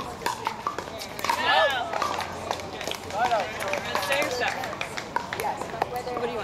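Paddles striking plastic pickleballs on surrounding courts, sharp pops at irregular intervals, mixed with players' voices talking and calling.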